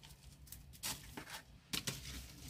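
Faint rustling and gritty scratching of fingers working a stem into gravelly potting mix, with a few short, sharper scrapes about a second in and near the end.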